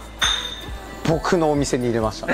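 A single bright, clear ping like a struck glass, ringing on one high tone for about half a second, followed by a man talking.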